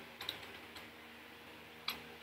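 A few faint keystrokes on a computer keyboard, spaced out, the last one loudest near the end.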